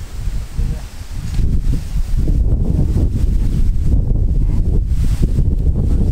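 Wind buffeting the microphone: a loud, uneven low rumble that grows stronger after the first second or so.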